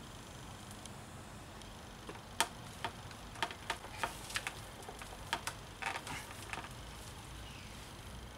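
Plastic propeller clicking and knocking against the shaft of an electric trolling motor as it is pushed and twisted on by hand. Irregular sharp clicks start about two seconds in and run for several seconds, the loudest near the start. It is a tight fit, which the owner puts down to moulding flash in the propeller's bore.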